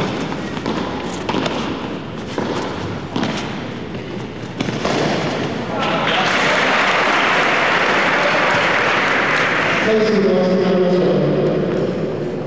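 A padel rally: several sharp ball hits from rackets and the court in the first five seconds. The crowd then applauds for about four seconds once the point ends, and a voice calls out loudly near the end.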